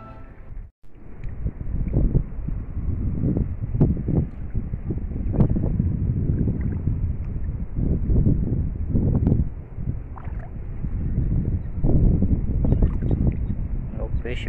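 Wind buffeting the microphone: a loud, low rumble that surges in irregular gusts about every second or two.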